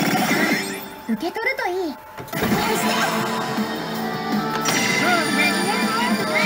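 Pachislot machine's own sound: game music and effects with a character's voice line about a second in, then louder music and effects as a new reel-spin effect starts.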